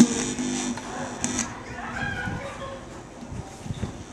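Music playing at low level through the speakers of a digital echo mixer amplifier under test after repair, opening with a brief loud held tone.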